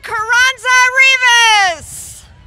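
A spectator's high-pitched voice cheering loudly, in a few drawn-out yells, the last held for over a second and dropping in pitch as it fades.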